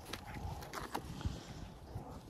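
A few soft, irregular footsteps on grass and soil.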